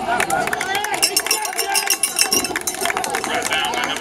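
Crowd of spectators chattering close by, several voices overlapping, with a run of sharp clicks about a second in.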